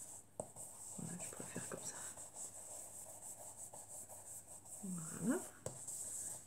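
Faint scrubbing and dabbing of a foam ink-blending tool on cardstock through a stencil, with a few light ticks as it meets the paper.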